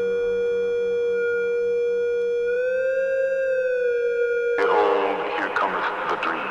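Electronic music from a hardcore DJ mix: a long held synth tone that bends up in pitch and slides back down. A sudden, noisier, voice-like passage cuts in about four and a half seconds in.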